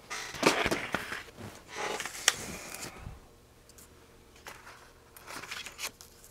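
Handling noises on a wooden workbench: paper rustling and a few light clicks and knocks as small parts are shifted about, busier in the first half and quieter after.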